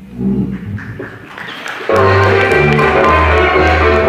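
Moldovan folk band of violins, cimbalom, brass and double bass playing live. After a quieter passage of scattered notes, the full band comes in loudly about two seconds in, over a repeating bass line.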